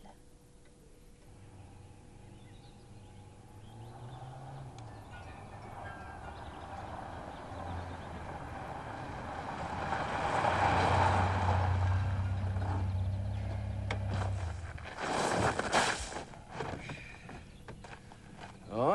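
A car approaching and pulling up, its engine hum growing steadily louder and then stopping, followed by a few sharp knocks near the end.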